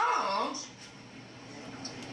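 A man's preaching voice drawing out the end of a phrase, falling in pitch and fading about half a second in, followed by the quiet background of the church hall.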